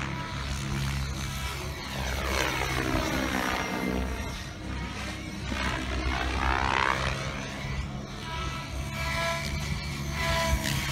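Radio-controlled 3D competition helicopter flying overhead. Its rotor and motor whine swells and fades and sweeps in pitch as it moves about the sky, loudest about two to three seconds in and again around six to seven seconds.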